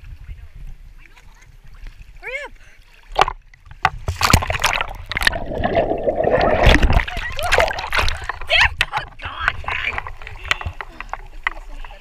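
A person splashing into the sea, a sharp splash about three seconds in. Several seconds of loud rushing, bubbling water follow, heard from underwater, then lighter sloshing of water at the surface.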